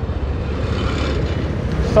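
Street traffic: a passing motor vehicle, its hiss swelling and fading about a second in, over a steady low rumble.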